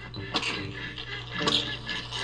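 Cartoon soundtrack music, quiet and sparse, with a few short sharp hits, the clearest near the middle and about three quarters of the way through.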